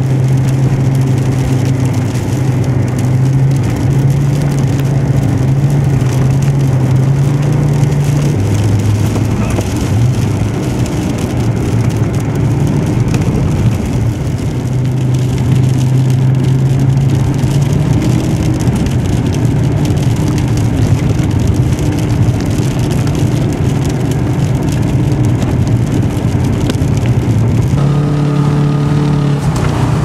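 A car engine heard from inside the cabin while driving across a snow-covered lot, under a constant rush of tyre and wind noise. The engine holds steady revs that drop and pick up again several times, about a third of the way in and again near the end.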